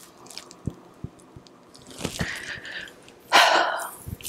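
Handling noise as hands and long hair move against clothing and a clip-on microphone: a few soft knocks early, then rustling, with a louder short rush of rustle about three and a half seconds in.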